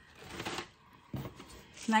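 Papery, crinkly rustling of a packaged food item being handled and lifted out of a box: a rustle about half a second in and a shorter one just past the middle.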